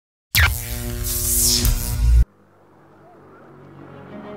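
A loud intro sound effect: a noisy hit with a deep rumble, sweeping pitches and steady tones, that cuts off abruptly a little over two seconds in. Soft music then fades in and slowly grows louder.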